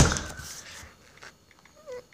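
A sudden thump with a noisy tail that fades over most of a second. Near the end comes a brief, faint falling whine from a small dog, a whimper.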